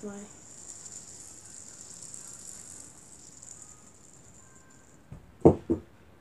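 A fidget spinner spinning, its bearing giving a steady high-pitched rattling hiss that dies away about five seconds in. Near the end come a few sharp knocks, the loudest sounds here, as the spinner is handled.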